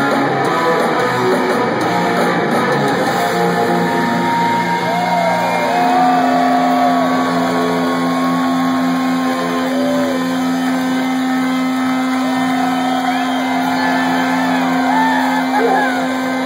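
A live rock band with loud electric guitars in a large hall. After the first few seconds a single low note is held and rings on steadily, with whoops from the audience over it.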